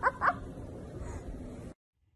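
A dog yipping in a quick run of short, high calls that stops just after the start, followed by faint background until the sound cuts off near the end.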